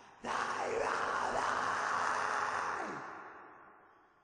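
Closing sound of a track on a melodic death metal demo recording: a sustained, noisy sound with several falling pitch sweeps cuts in just after the music stops, one sweep sliding far down, then fades away.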